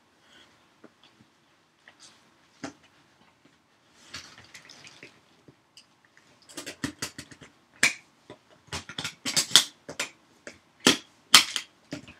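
Metal latches and clasps on a footlocker storage trunk being worked open: a few scattered taps and a brief rustle, then a run of sharp clicks and clacks in the last half.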